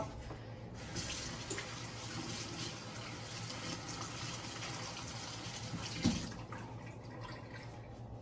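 Kitchen tap running as hands are rinsed under it, an even hiss of water that starts about a second in and stops about six and a half seconds in, with a knock just before it stops.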